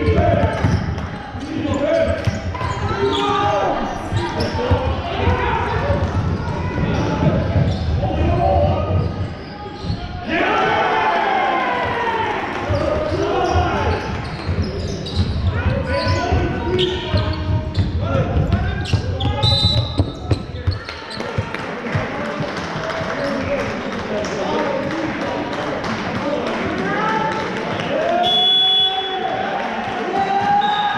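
A basketball being dribbled and bouncing on a sports hall court, with players' indistinct shouts, echoing in the large hall.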